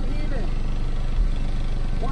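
Car-audio subwoofers in a square-body Chevrolet pickup playing bass-heavy music at competition level, metering about 162 dB, heard from outside the truck as steady deep bass with a heavy thump about a second in.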